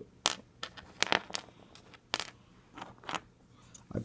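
Small plastic miniature parts clicking and tapping against each other and the table as they are picked up and sorted by hand, in a run of sharp, irregular clicks.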